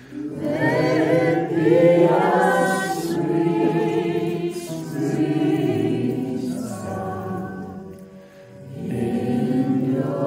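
A small group of women's voices singing a worship song together, unamplified because the power is out, in long held phrases with a brief pause for breath about eight seconds in.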